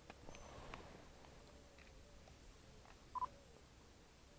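One short electronic beep about three seconds in, the autofocus-confirmation beep of a Nikon DSLR, over near silence with a few faint clicks and rustle.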